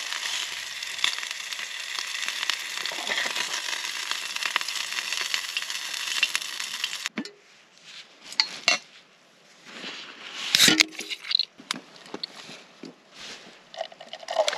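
Bacon rashers frying in a pan on a camp stove, a steady sizzle that cuts off suddenly about seven seconds in. Scattered light clicks and clinks of handling a can and a metal cooking pot follow, with one louder sharp burst about ten and a half seconds in.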